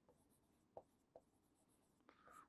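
Near silence, with two faint short strokes of a marker writing on a board.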